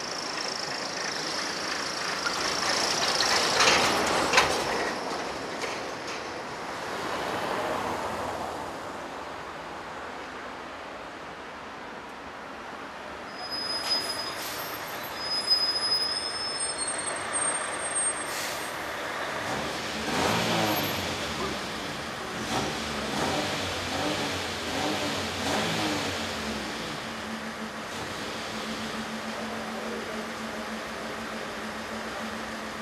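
Street traffic: vehicles passing one after another, the loudest pass a few seconds in. A few short high-pitched squeaks come around the middle, and a low steady engine-like tone runs through the last few seconds.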